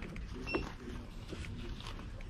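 Clothes hangers shifting and clicking on a shop's clothes rail as a garment is pulled out, with one sharper click and a brief high ring about half a second in.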